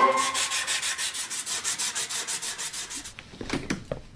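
Sandpaper rubbed quickly back and forth on a wooden stick, an even run of rasping strokes several times a second that fades away. A few light knocks follow near the end.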